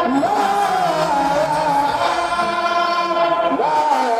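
Voices chanting an Arabic religious poem (a khassida) in a slow, drawn-out melody with long held, wavering notes, the pitch sliding up near the end.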